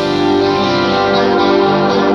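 Live keyboard music: sustained chords held steady on a two-manual keyboard, played loud.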